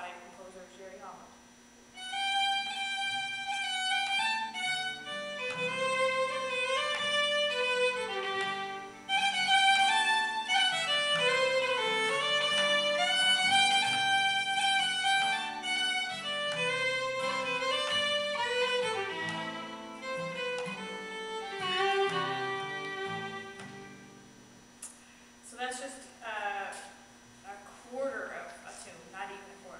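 Solo fiddle playing a slow Cape Breton tune with long, held, sliding notes, over a quiet acoustic guitar accompaniment. It begins about two seconds in and dies away a few seconds before the end.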